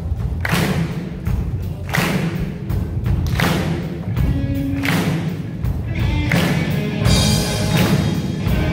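Amateur rock band playing live on electric guitars and a drum kit, with a heavy booming low end. Cymbal-and-drum accents hit about every second and a half.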